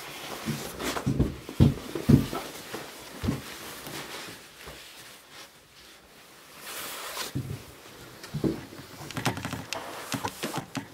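A person moving about and handling things in a small room: scattered knocks and thumps with some rustling, several in the first few seconds and more near the end, with a brief hiss about seven seconds in.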